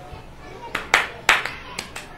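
Several sharp hand claps at an uneven pace, the two loudest about a second in, with a couple of softer ones near the end.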